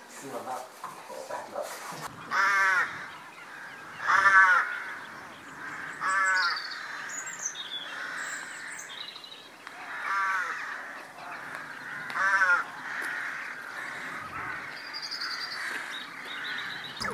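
A bird calling loudly five times, each call about half a second long and roughly two seconds apart, over fainter chirping of small birds.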